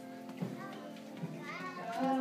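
Young children's voices chattering over a faint held accompaniment, with a small knock about half a second in; near the end the children start singing again as the accompaniment comes back in.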